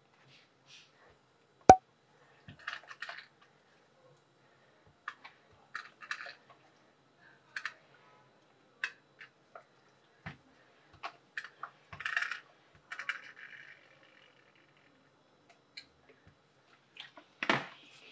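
Fabric and fusible interfacing being handled and smoothed on a cutting table: scattered light rustles and soft taps, with one sharp click about two seconds in and a longer rustle near the two-thirds mark.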